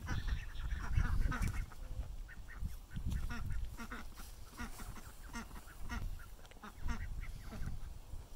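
Domestic chickens clucking and calling in short, scattered calls over a low rumbling noise.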